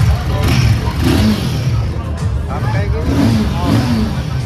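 Royal Enfield Himalayan 450's single-cylinder engine running, mixed with crowd voices and background music.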